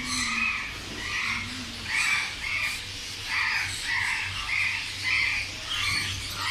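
Small caged parrots calling: a run of short, harsh squawks, about ten of them, over a steady low hum.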